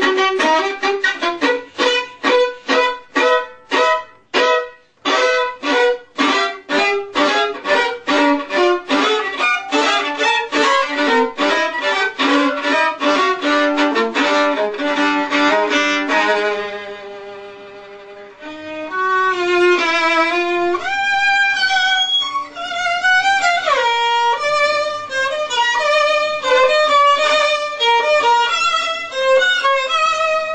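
Solo violin improvising: a fast run of short, separate bowed notes for the first half, then a held note that fades away, then slower held notes with sliding pitch.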